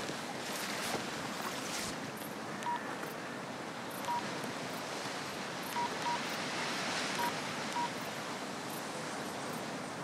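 Mobile phone keypad beeping as a number is tapped in: six short, identical beeps at uneven intervals, two of them close together. Behind them is steady sea surf and wind noise.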